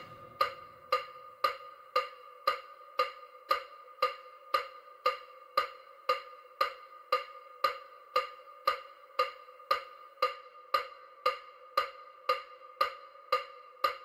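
EMDR bilateral-stimulation audio: short, evenly spaced pitched ticks, about two a second, over a faint steady tone.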